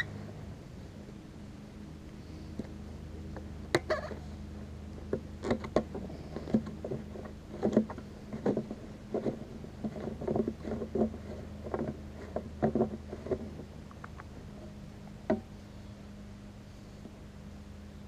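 Red plastic gasoline can having its spout and cap unscrewed and handled: a run of short, irregular plastic clicks and knocks, over a steady low hum.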